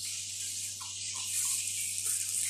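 Steady background hiss with a low hum underneath, and a few faint short sounds in the middle.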